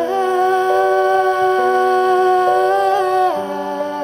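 A girl's voice holding one long sung note into a microphone over sustained keyboard chords that change every second or so; the note wavers slightly and then drops in pitch about three seconds in.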